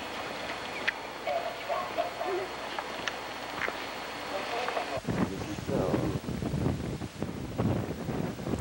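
Faint background voices, then about five seconds in wind starts buffeting the microphone in uneven gusts.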